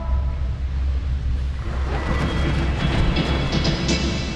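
Chairlift running, heard from the chair: a steady low rumble with a rattling clatter of the lift machinery.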